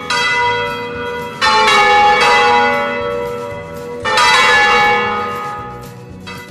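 A bell struck three times, each strike ringing on and slowly fading before the next.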